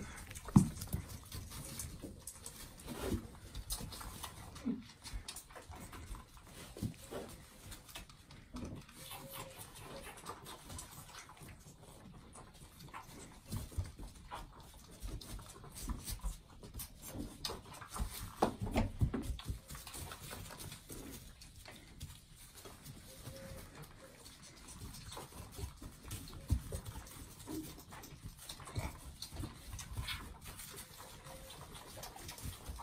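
Animals making short, irregular low-pitched sounds, with a few faint brief higher calls.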